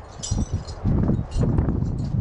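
Metal dog tags on collars or harnesses jingling in a few short bursts as Siberian huskies play, over a steady low rumble.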